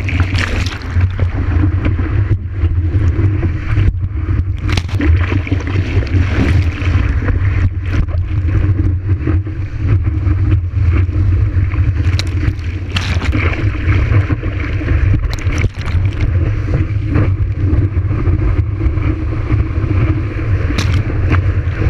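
Water rushing and wind buffeting a camera mounted on the nose of a surfboard as it paddles into and rides a breaking wave: a heavy, steady low rumble with frequent sharp splashes of spray hitting the camera.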